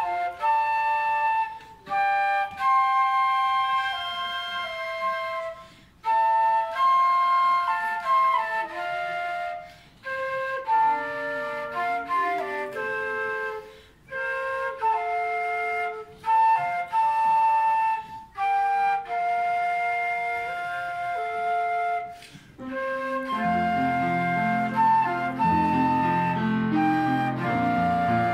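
Two flutes playing a duet in phrases with short breaks between them, with piano accompaniment that grows fuller and louder in the last few seconds.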